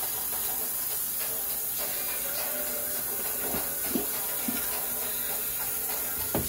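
Tap water running steadily into a stainless steel sink as a metal baking pan is washed under it, with a few short knocks of the pan against the sink in the second half.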